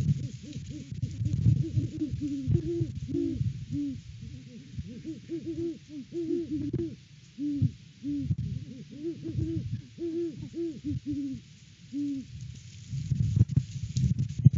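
Great horned owls hooting: a long run of short hoots, each rising and falling in pitch, coming close together and overlapping, until they stop about twelve seconds in. Under the hoots, wind rumbles on the microphone, with a gust near the end.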